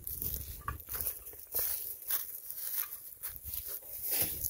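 Footsteps on dry leaves and dirt, an irregular series of soft steps, with rustle from the handheld phone.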